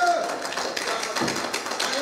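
A congregation clapping their hands in praise: a dense, uneven patter of claps, with a voice trailing off at the start.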